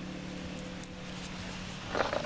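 A steady low hum over faint background hiss, with a couple of faint light clicks.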